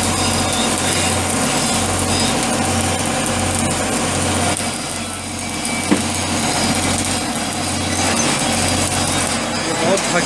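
Arc (stick) welding on a steel pipe flange: a steady crackling arc over the constant hum of a running engine, with one sharp click about six seconds in.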